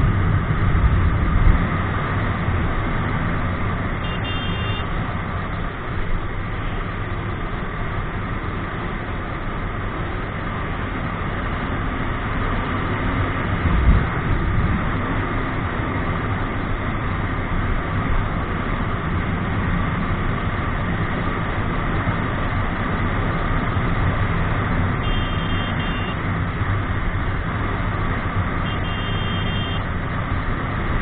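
Motorcycle riding along at steady speed, heard from a camera on the bike: a continuous blend of engine drone and wind noise. A few short high beeps cut in briefly, once early and twice near the end.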